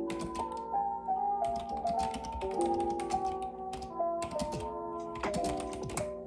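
Fast typing on a backlit computer keyboard: rapid runs of key clicks broken by short pauses, over background music with a gentle melody.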